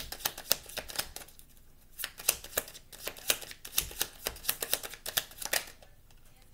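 Oracle cards being shuffled by hand: a rapid run of crisp flicking clicks from the deck. The clicks pause briefly about a second and a half in, then go on until near the end.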